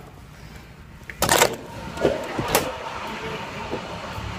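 A short loud rush of noise just over a second in, then a bus engine running steadily under a couple of light knocks.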